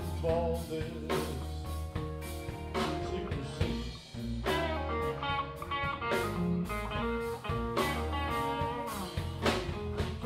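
Live band playing: electric guitars over electric bass and a drum kit, with regular drum hits and a guitar melody line.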